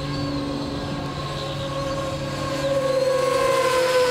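Electric ducted-fan motor of a 64 mm K-8 model jet whining steadily in flight, growing louder in the second half with a slight drop in pitch near the end as it comes closer.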